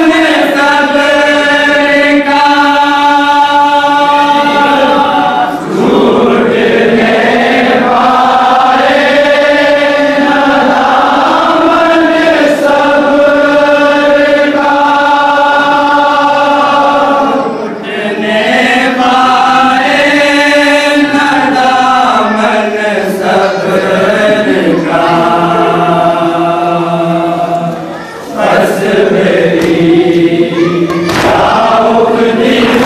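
A group of men chanting a nauha, a Shia Muharram lament, without instruments, in long held notes. The singing breaks briefly about six, eighteen and twenty-eight seconds in.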